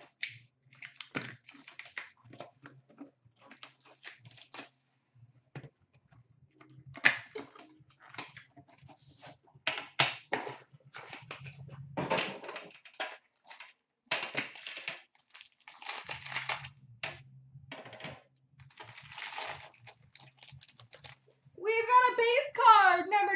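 Hands opening a boxed pack of trading cards: irregular clicks, scrapes and rustles of the cardboard packaging, with a few longer scraping stretches as the lid and contents are worked loose.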